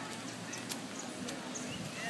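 Outdoor background noise of a busy beach: a steady hiss with faint distant chatter, a few light clicks and some faint short chirps near the end.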